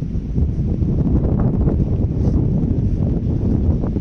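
Wind buffeting the phone's microphone: a loud, low, rumbling rush that swells at the start and eases off at the end.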